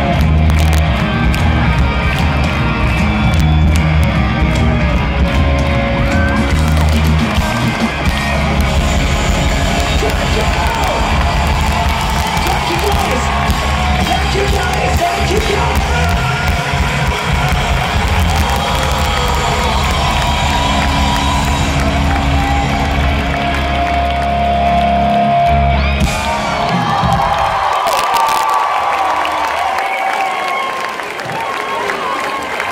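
Live rock band with electric guitar, bass and drums playing loudly through a big PA, heard from among the crowd. About 27 seconds in the band stops and crowd cheering and shouting carry on.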